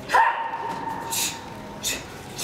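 A karate competitor's kiai: one sharp, loud shout just after the start, held for about a second. Then come two crisp snaps of her cotton gi as she throws strikes.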